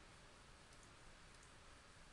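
Near silence: faint room hiss with a few faint clicks of a computer mouse.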